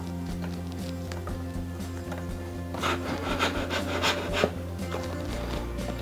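Bicycle seatpost being pushed down in the seat tube, a few short rubbing scrapes from about three seconds in, over steady background music.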